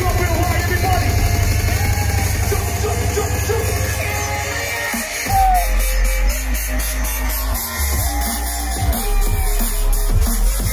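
Loud electronic dance music played through a stage PA, with an MC's voice on the microphone over it. About halfway through, the track drops into a deep, heavy sub-bass drum and bass beat.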